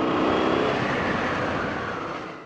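Honda XL650V Transalp's V-twin engine running while the motorcycle rides along, mixed with steady wind and road noise on the camera microphone.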